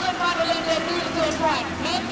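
A pack of Volkswagen Polo race cars running at speed, several engine notes overlapping and rising and falling, with a couple of drops in pitch.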